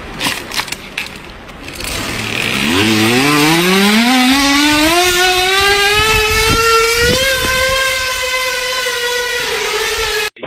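A plastic bottle pressed against a bicycle's knobby rear tyre, buzzing as the tread strikes it. A few crackling clicks come first; from about three seconds in the buzz rises steadily in pitch as the wheel speeds up, like a motorbike revving, then holds steady.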